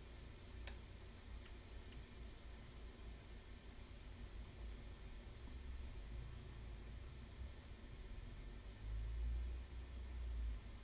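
Quiet room tone with a low hum, and a sharp computer mouse click less than a second in, followed by two fainter clicks; the low rumble swells briefly near the end.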